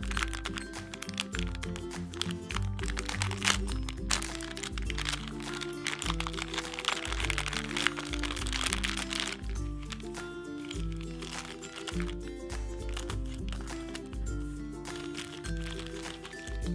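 Foil blind-bag packaging crinkling and tearing open by hand, then small plastic wrappers rustling, with the crackling densest in the middle. Background music with a steady bass line plays throughout.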